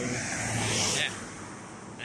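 A car passing close by: the road noise swells over the first second and then fades away.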